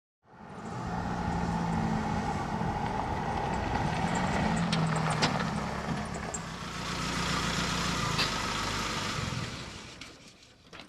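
Nissan Navara ute driving along a sealed road: steady engine and tyre noise whose engine note rises and falls slightly. It fades in at the start and out near the end, with a few short clicks in the middle.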